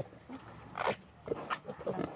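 Pigs grunting and squealing in a string of short calls, the loudest and highest squeal just under a second in.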